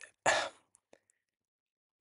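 A short breath noise from the speaker about a quarter-second in, followed by a faint click about a second in.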